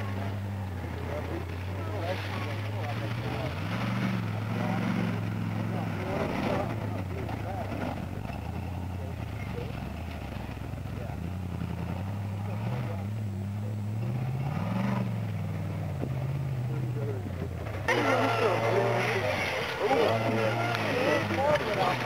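Rock crawler buggy's engine running at low speed, its revs rising and falling several times as it crawls over the rocks. Near the end the sound changes suddenly to louder voices over the engine.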